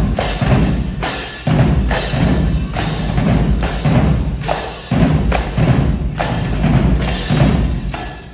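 High school marching drumline playing: snare, tenor and bass drums under a steady pulse of accented hits with crash cymbals, a little under one a second.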